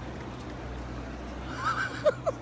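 Steady low hum of city street traffic. About one and a half seconds in, a person gives a high, wavering cry.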